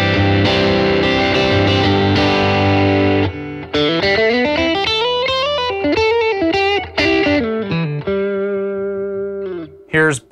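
Fender American Elite Telecaster with its neck and bridge pickups together, played through an Xotic Effects overdrive pedal and amplifier. It holds a chord for about three seconds, then plays a melodic run of single notes, and ends on held notes that fade just before the end.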